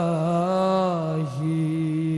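A single voice chanting an Islamic shalawat, a sung blessing on the Prophet, in long held melismatic notes with a wavering, ornamented line. A little past halfway it dips briefly to a lower pitch, then settles on a new long note.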